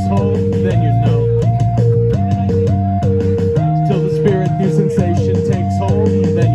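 Electric bass guitar played live over a backing track with drums and a repeating higher two-note riff, an instrumental passage without singing.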